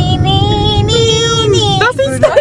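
A young woman's voice singing one long held note that bends slightly in pitch and breaks off near the end, over the low rumble of car road noise inside the cabin.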